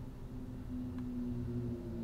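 Quiet room tone: a low steady hum, with one faint click about a second in.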